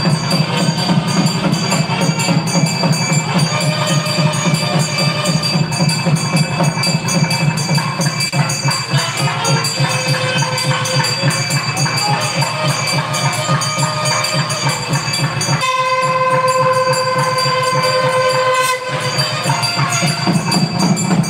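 Temple ritual music: fast, even drumming under a continuous high ringing. A single horn-like note is held for about three seconds near the end.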